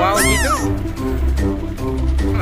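Background music with a steady beat, and near the start a single cat meow sound effect, one loud rising-and-falling call lasting about half a second.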